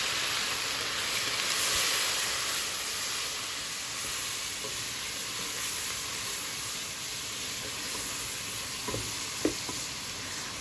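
Water sizzling and hissing in hot oil over golden-browned onions in a pot, stirred with a wooden spoon; the water was added to keep the onions from burning. The hiss is steady, loudest about two seconds in and easing a little after, with a couple of light knocks near the end.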